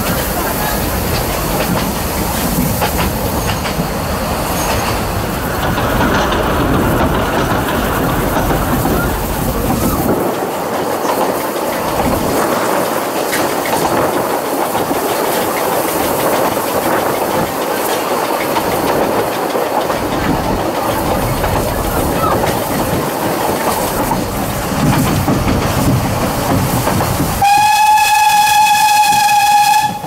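Narrow-gauge steam train running, heard from an open carriage: a steady rumble and clatter of wheels on the rails. Near the end the locomotive's steam whistle sounds one long, steady note for about two and a half seconds, as the train nears a level crossing.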